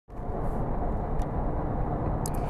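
Steady road and engine noise inside a moving Lexus's cabin: a low, even rumble of tyres and engine at road speed.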